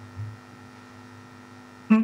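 Steady electrical mains hum on the audio line, a low, even drone with a few fixed overtones. A woman starts speaking right at the end.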